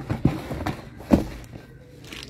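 A few irregular knocks and thuds, the loudest a little over a second in, from household items being handled and set down.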